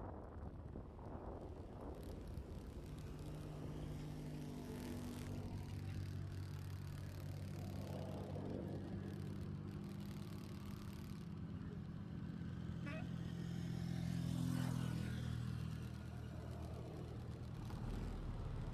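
Car engine running at a steady idle, heard from inside the car. A little past the middle there is a swell of noise as another vehicle passes.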